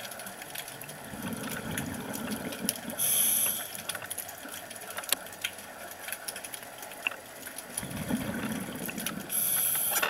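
Underwater scuba breathing through a regulator: two breath cycles about six seconds apart, each a low bubbling rumble followed by a short, loud hissing rush, over a constant faint crackle of clicks.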